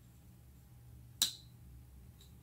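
Bestech Ascot folding knife's blade swung shut by hand, snapping closed into the handle with one sharp click a little past a second in.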